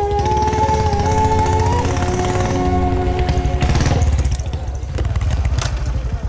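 A motorcycle engine running close by with a low, even beat, under background music of long held notes that ends a little over halfway through.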